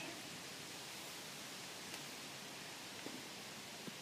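Faint, steady background hiss with a couple of tiny soft ticks.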